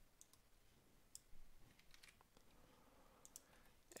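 Near silence with a few faint, sparse clicks from a computer keyboard and mouse as code is edited.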